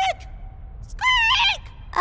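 A cartoon boy's voice making high, wavering squeaks in imitation of his squeaking stuffed toy. One call tails off right at the start and a second, fuller one comes about a second in.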